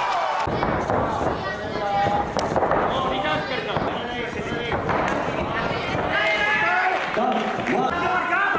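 Men's voices calling out over a kickboxing bout, with a few sharp smacks in between.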